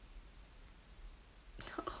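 Quiet room tone with a faint steady low hum, then a woman starts speaking near the end.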